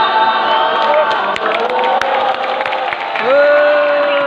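Football supporters' crowd chanting and singing together in drawn-out held notes, with a long, loud held note near the end.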